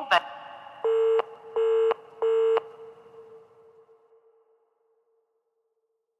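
The last moments of an electronic house track: a short clipped note right at the start, then three identical short synth stabs on one pitch, about two-thirds of a second apart. The last stab rings on and fades out to silence about four and a half seconds in, as the track ends.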